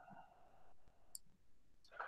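Near silence with one faint, brief click a little over a second in, a computer mouse button being clicked.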